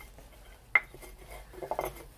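Cast alloy water pump housing knocking and clinking against the engine as it is offered up for a test fit: one sharp metallic knock that rings briefly about three quarters of a second in, then a quick run of lighter clinks near the end.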